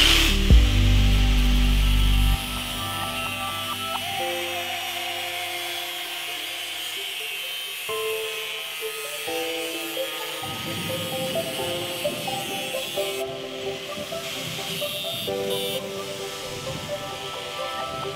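Background music over a handheld angle grinder's cut-off disc cutting through a flat steel blade, a steady high grinding whine under the music.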